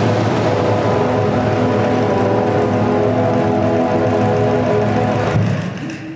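Drum and bugle corps horn line of G bugles holding a sustained chord, which fades away near the end.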